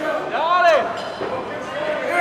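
A single shouted call from one voice, rising and falling in pitch, about half a second in, over the steady background noise of the fight hall.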